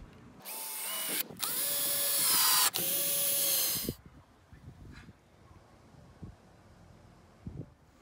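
Cordless drill-driver driving a wood screw into melamine-faced chipboard: a short run, a brief stop, then a longer run of about two seconds whose whine rises as it starts, stopping about three and a half seconds in.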